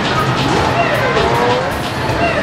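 Loud video-arcade din: electronic game sounds and music from many machines, with gliding electronic tones and voices mixed in.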